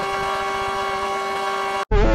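One steady, held horn-like note that cuts off suddenly near the end.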